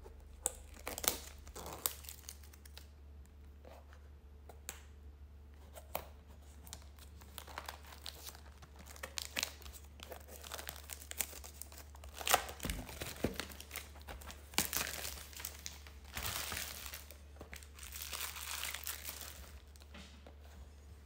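Plastic shrink-wrap being torn and crumpled off a trading card box by hand: irregular crinkles and sharp snaps, with a longer run of crinkling near the end.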